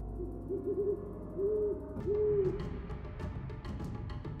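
Owl hooting sound effect: a quick run of short hoots, then two longer hoots, over a low rumble. Music with short percussive hits comes in about halfway.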